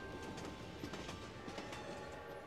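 Train clickety-clack of wheels over rail joints, fading out at the close of the song over faint lingering music.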